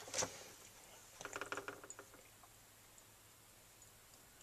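Soldering iron being handled in and out of its coiled-spring stand: a single faint knock just after the start, then a short run of small metallic clicks and rattles about a second in.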